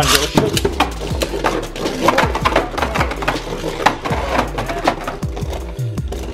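Two Beyblade Burst DB spinning tops launched into a clear plastic stadium at the start, then spinning and colliding, with an irregular run of sharp plastic-and-metal clacks several times a second. Background music plays underneath.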